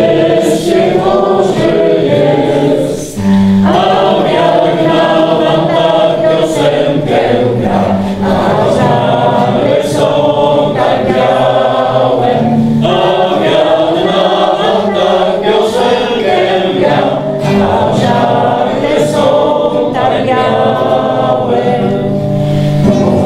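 A roomful of people singing a song together in chorus, phrase after phrase with brief breaths between, accompanied by an acoustic guitar.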